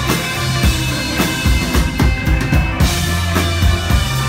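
Live rock band playing loud: a steady drum beat with bass drum and snare over held bass notes and electric guitar.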